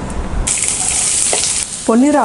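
Chopped onions hitting hot oil with cumin seeds in a frying pan: a sudden sizzle starts about half a second in and eases off shortly before the end.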